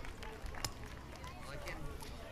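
Faint crowd sound: distant voices and a few scattered hand claps as the applause dies away.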